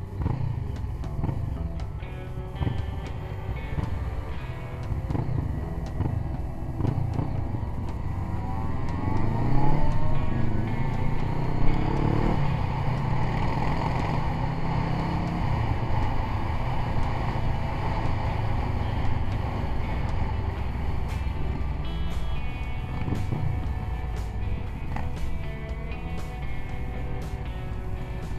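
Several motorcycle engines running on the road. One rises in pitch as it accelerates, about ten seconds in.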